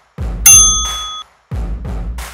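A single bell-like ding from the workout's interval timer, marking the end of the last interval as the countdown reaches zero: it strikes about half a second in, rings with several high tones and cuts off suddenly after under a second. Beneath it plays electronic music with heavy bass beats.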